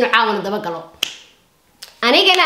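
A person talking briefly, then one sharp click about a second in, with a fainter click near the end.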